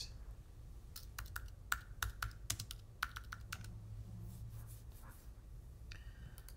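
Computer keyboard typed on: a quick run of about a dozen keystrokes spelling out the words "story book", then a few fainter taps.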